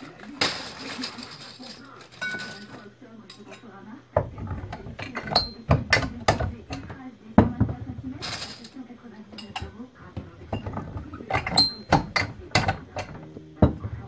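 Glass bottles clinking and knocking as they are handled and set down, with a couple of short ringing clinks. Twice a longer rustling scrape.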